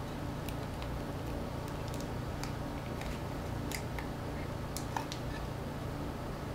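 Faint, scattered small clicks and ticks of a Sony MP3 player's casing being handled and pried apart by hand, over a steady low hum.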